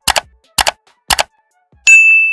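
End-card click sound effects: three sharp double clicks about half a second apart, then a loud, bright bell-like ding near the end that keeps ringing.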